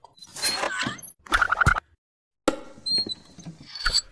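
Cartoon sound effects for an animated logo intro: quick clicks, rustles and a short run of squeaks about a second and a half in, cut off suddenly by half a second of silence, then more clicking and clatter.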